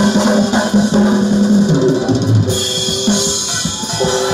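Live Korean percussion music: small handheld sogo drums struck with sticks together with a drum kit, over sustained low pitched notes.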